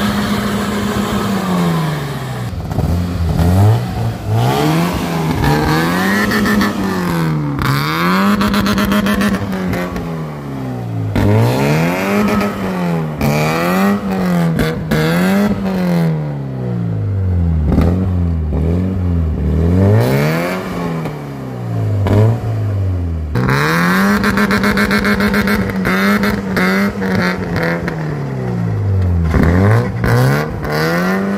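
BMW E36 coupe's engine revving hard over and over as the car is drifted, its pitch climbing and dropping a dozen or more times and held high for a few seconds at the start and again near the end.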